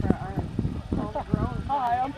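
Indistinct chatter of several voices talking at once, with irregular low knocks and thumps underneath.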